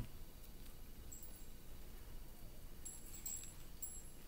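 Quiet room tone with a few faint, brief, high chime-like tinkles, once about a second in and again near the end.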